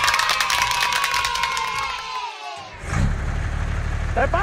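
Children cheering with clapping: a long held shout that sags slightly in pitch and tails off about two and a half seconds in. A low, steady engine-like hum starts up near the end.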